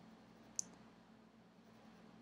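Near silence with a faint steady hum of room tone, broken by a single short, sharp click a little over half a second in.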